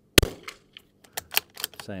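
A single .22 LR rimfire shot from a Sako Quad Range bolt-action rifle, sharp and loud, just after the start. About a second later comes a quick series of metallic clicks as the bolt is worked to eject the case and chamber the next round.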